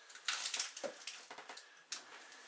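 Light handling noises: soft rustling with a few sharp clicks and crackles, the loudest click near the end.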